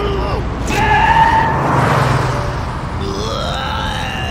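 Cartoon truck engine running with a steady low rumble, under a man's vocal sounds that end in a rising yell of alarm near the end.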